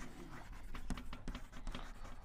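Chalk writing on a blackboard: a run of quick taps and short scratches as words are written out.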